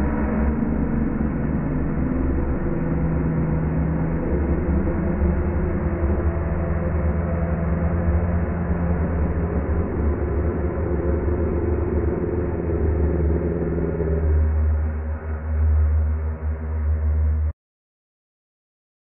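Ominous low rumbling drone with a few held tones. It stays loud and steady, swells slightly near the end, then cuts off suddenly.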